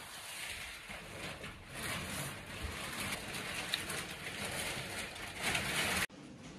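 Rustling and handling noise, with a louder burst of rustling near the end.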